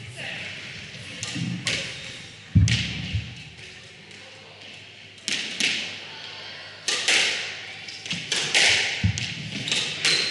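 Squash ball hitting rackets, the court walls and floor, sharp knocks with a short hall echo: a few scattered ones, the heaviest a low thump in the first half, then a quicker run of strikes from about two-thirds through as a rally gets going after the serve.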